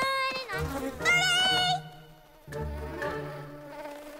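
Cartoon bee wings buzzing in wavering, pitched bursts, the loudest about a second in, then a steadier, lower hum, over soft background music.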